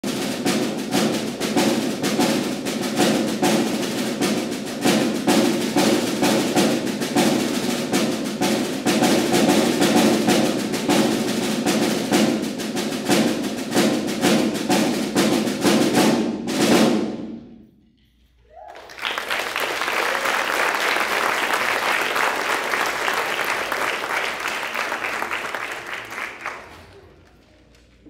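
A percussion ensemble plays a fast, dense drum passage that ends on a loud final stroke about sixteen seconds in. After a brief near-silence, the audience applauds, dying away near the end.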